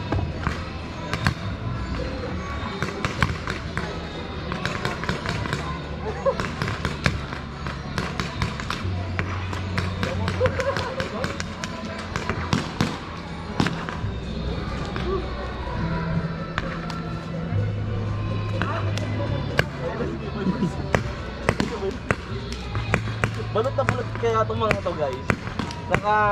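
Paintball markers firing: sharp pops, irregular and in quick runs, all through. Background music with a steady bass line plays underneath.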